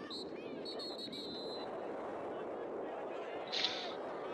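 Outdoor lacrosse-field ambience: a steady murmur of spectators with distant calls from players and the crowd. About a second in, a referee's whistle blows once, briefly and high, for the faceoff.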